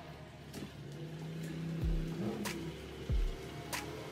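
A Lexus RX SUV's engine running at low speed as it reverses slowly into a garage, heard under background music with a steady beat.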